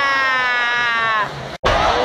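A single voice letting out a long, held shout, sliding slowly down in pitch and fading about a second and a half in, in reaction to a goalmouth chance as the goalkeeper dives. The sound cuts out abruptly just after, then other voices resume.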